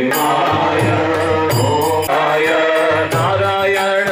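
Sanskrit mantras chanted by a voice in a steady, melodic sing-song, the notes held and gliding from one to the next.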